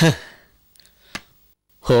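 A man's short voiced sigh, falling in pitch, then a single sharp click about a second later, with the man starting to speak near the end.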